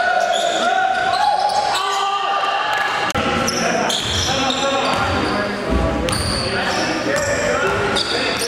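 A basketball being dribbled on a gym's wooden floor, with players' voices and short high squeaks through a continuous game din, and a heavier thump a little before six seconds in.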